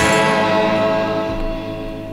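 The last chord of a 1967 garage-rock record ringing out and dying away after a final hit right at the start.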